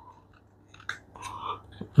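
Hard plastic parts of a GoGo Dino Perry transforming toy robot clicking and rubbing as they are worked by hand, a few small clicks and a short scrape, while a part is pried at that does not open.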